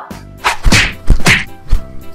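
Cartoon-style editing sound effects: a few quick whooshes and whacks in a row, the loudest hits near the middle and end.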